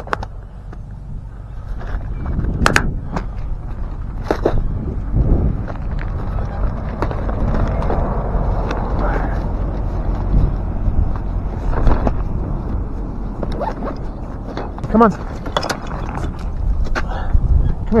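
Handling noise of a plastic tackle box and a soft gear bag: sharp plastic clicks about three and four and a half seconds in, then rustling and rubbing as gear is packed, over a steady low rumble.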